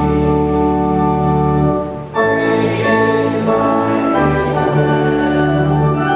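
Church organ playing slow, sustained chords that change every second or two, with a brief dip in loudness about two seconds in.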